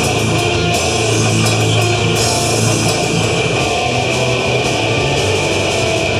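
A live progressive metal band playing loud: distorted electric guitars over a drum kit, with a steady wash of cymbals.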